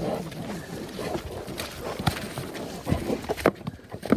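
Two yak bulls fighting head to head: several sharp knocks, loudest near the end, as horns and heads strike together.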